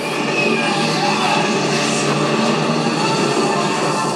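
Soundtrack of a TV battle scene playing loud: a dense, unbroken wash of fire and battle noise with orchestral music underneath.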